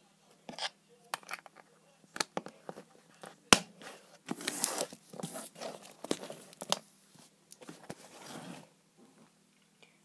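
Butter slime being poked and squeezed in a small plastic pot, making scattered sticky clicks and pops. Denser stretches of squishing crackle come in the second half, and one sharper click comes about three and a half seconds in.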